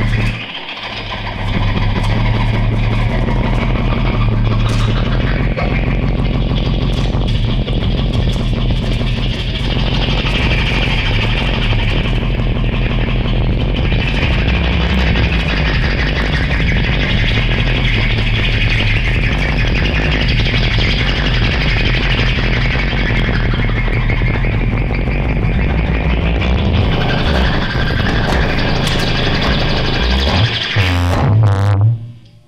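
Free-improvised noise music from an electric guitar and an amplified wooden board with electronics: a dense, loud, unbroken texture with a sustained low drone under a shifting band of gritty, buzzing upper-mid noise.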